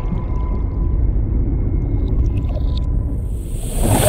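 Trailer underwater sound design: a deep, muffled rumble with a faint steady high tone and a few small bubbling clicks. A hissing swell rises in the last second.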